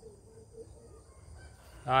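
Faint, steady, high-pitched chirring of insects in the background. A man's voice cuts in just before the end.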